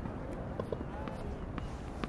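A tennis ball being bounced on a hard court before a serve, a few faint knocks over low outdoor background rumble.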